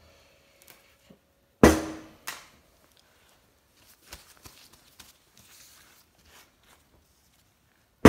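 A Turbo 400 transmission front pump knocks down onto a workbench with a sharp clank and a short metallic ring about one and a half seconds in, followed by a lighter knock and faint handling clicks and rustles.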